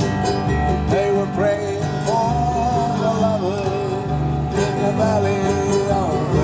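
Acoustic country band playing an instrumental break: two acoustic guitars strumming, a mandolin and an upright double bass under a lead melody of long notes that waver and bend in pitch.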